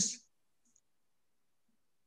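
A man's spoken word trails off, then near silence for the rest of the pause, broken only by a couple of very faint clicks.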